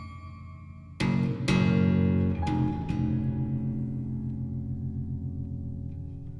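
Contemporary chamber duo of 36-string double contraguitar and piano. Low notes sound, then about a second in a loud struck chord enters, followed by a few more attacks over the next two seconds. The notes are then left to ring and slowly fade.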